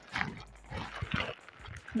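Plastic shopping bag and plastic-wrapped packets of braiding hair rustling and crinkling as they are handled, in irregular bursts.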